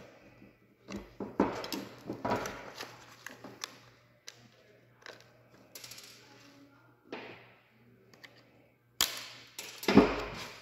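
Plastic fuel-pump canister being prised apart with a screwdriver and handled on a workbench: irregular clicks, snaps and knocks of plastic and metal tools on the bench top, the loudest two knocks near the end.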